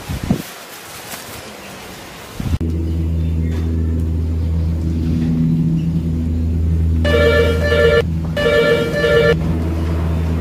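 A steady low humming drone starts suddenly about two and a half seconds in and holds. Near the end two ringing electronic tones of about a second each, with a short gap between them, sound over it.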